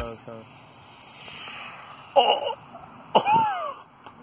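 Faint hiss of a homemade sugar rocket burning as it skims low over the grass, with two short vocal exclamations from onlookers a little past halfway, the second falling in pitch.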